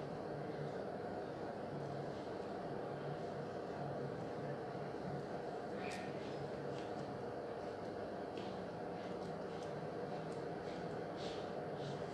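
Steady low background hum and hiss, with a few faint clicks about six seconds in and again near the end.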